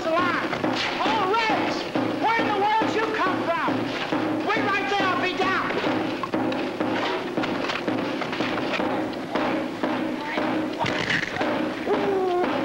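Film soundtrack music with wavering, bending melodic lines over a steady low drone, mixed with repeated irregular thumps and knocks.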